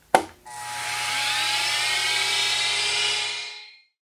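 A click of a machine tool's push-button start switch, then its electric motor spins up with a rising whine and runs steadily before fading away near the end.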